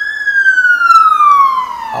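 Ambulance siren passing close by, very loud: a slow wail that peaks just after the start and glides steadily down in pitch over about two seconds.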